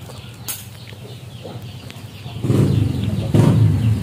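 Handling noise from the phone as it is picked up and moved: a light click about half a second in, then a louder, low rubbing rumble against the microphone from a little past halfway on.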